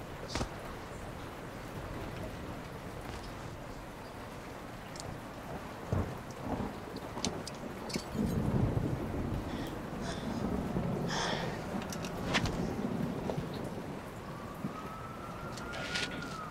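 Steady rain with a low rumble of thunder swelling from about eight seconds in, a few sharp clicks over it. Near the end a police siren wail starts, rising in pitch.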